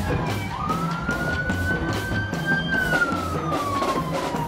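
A wailing emergency-vehicle siren: a slow rise in pitch from about half a second in, then a slow fall near the end. Music with a steady beat plays under it.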